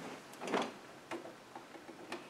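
Faint handling sounds: a soft fabric rustle about half a second in and a few small clicks as cloth is arranged at a sewing machine. The machine is not running.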